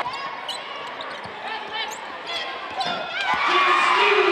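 A basketball bouncing on a hardwood court, a few short thumps, with short high sneaker squeaks over a murmur of voices in the gym. The voices grow louder in the last half-second or so.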